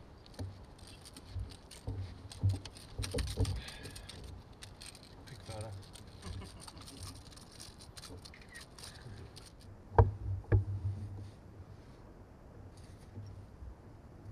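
Gear and handling noise on a fishing boat as an angler fights and lands a bream: scattered clicks and knocks, then two sharp knocks about ten seconds in, over a faint low rumble, with faint voices.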